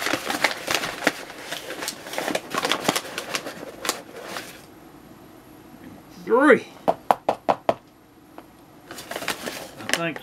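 A metal measuring cup scooping flour out of a paper flour bag and tipping it into a plastic tub, with the bag's paper rustling for the first four seconds and again near the end. About two-thirds through there is a short voiced sound, followed by a quick run of light ticks.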